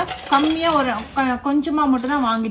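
A woman speaking, with a few light clinks of dishes and utensils being handled, one at the start and another about one and a half seconds in.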